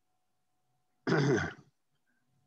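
A man clearing his throat once, a short voiced sound about a second in.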